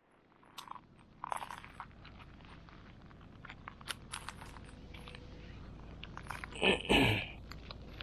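Footsteps crunching on loose gravel, with scattered clicks of small stones. There is a louder crunch about seven seconds in.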